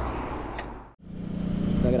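The sound fades out to a moment of silence about a second in. Then a Ducati Hypermotard's V-twin engine fades in, running at a steady pitch and growing louder as the motorcycle cruises.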